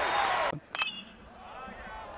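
Loud crowd noise that cuts off suddenly about a quarter of the way in. Just after the cut comes the sharp ping of an aluminium bat hitting the ball, which rings briefly, followed by faint crowd voices.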